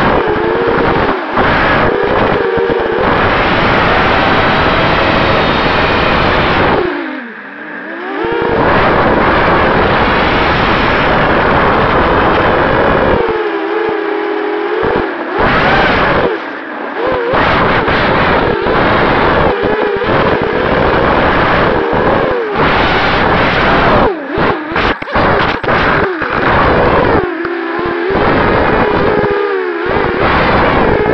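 Racing quadcopter's four Sunnysky 2204 brushless motors and propellers whining, heard through the onboard camera, the pitch rising and falling with the throttle over a loud rush of wind noise. About seven seconds in the whine drops away and falls in pitch as the throttle is cut, and near the end it cuts out and back in several times in quick succession.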